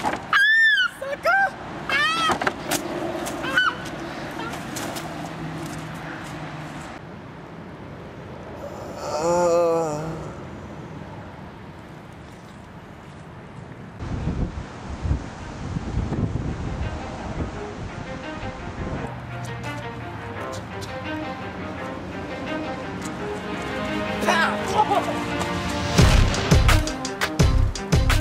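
A few short, rising-and-falling shouted cries in the first few seconds, and a wavering, wailing cry at about nine seconds. From about halfway on, background music with a steady beat, louder near the end.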